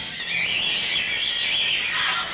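Electric guitar played through live electronics, making a high, wavering, noisy sound with little low end.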